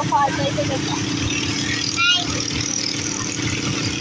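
Motor rickshaw engine running steadily as it drives, heard from inside the open cabin as a constant low hum and rumble. Brief voices come near the start and about two seconds in.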